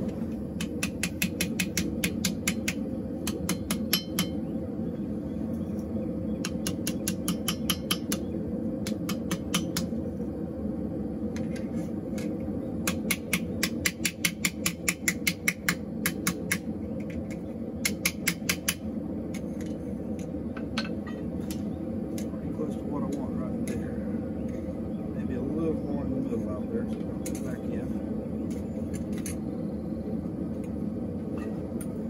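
Hand hammer striking a hot forged steel spoon on an anvil to straighten and shape it. The blows come in quick runs of about four or five sharp strikes a second, then thin out to scattered single taps in the last third. A steady low hum runs underneath.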